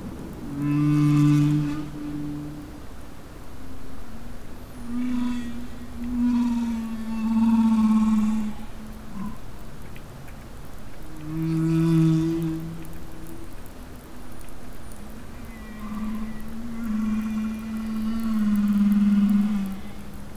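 Humpback whale song: long, low moaning calls with overtones, in phrases of a few seconds separated by short gaps. A phrase of two held notes, each followed by a longer call that slides slightly down, comes round twice.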